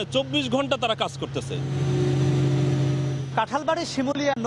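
Engine hum that swells up and fades over about two seconds, with several steady tones over a hiss. A man's speech is heard on either side of it.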